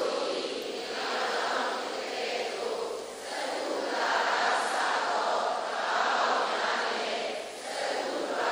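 Many voices reciting together in unison, a blended group chant that rises and falls in waves every second or so.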